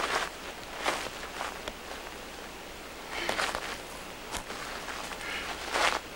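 Irregular scuffing footsteps on gritty, rocky ground, a handful of short scrapes with the loudest near the end and a single sharp click a little past four seconds.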